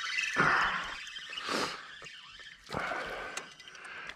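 A small hooked bass splashing at the surface as it is reeled in to the boat, heard as a few short, irregular splashy bursts.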